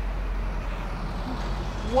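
Steady rumble of road traffic, a motor vehicle running past on the street.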